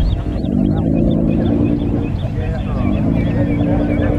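A car engine running with a steady, low, even note that drops away briefly about two seconds in before resuming, under the chatter of a crowd.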